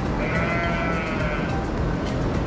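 A single long bleat from one of the penned market animals, lasting about a second and a half and gently rising then falling in pitch, over steady background music and pen noise.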